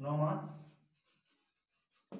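A man's voice holds a drawn-out syllable for under a second at the start, then faint scratching of a marker writing on a whiteboard.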